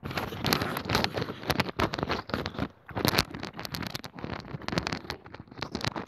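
Rapid, irregular crackling and rustling handling noise on a clip-on or hand microphone as it is moved and rubbed against clothing.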